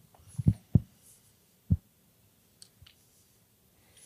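A few short, soft low thumps in the first two seconds, then a few faint clicks, with little else between them.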